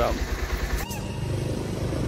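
Motorcycle engine idling with an even low beat, with a click about a second in.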